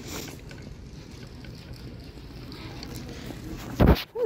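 Low, steady wind rumble on the microphone over faint open-street ambience, with a brief loud thump just before the end.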